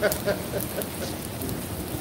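Steady rain falling on a wet city sidewalk and street: an even hiss with faint scattered drop ticks.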